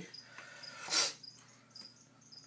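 A cricket chirping in short, scattered chirps, with a brief hissing rustle about a second in.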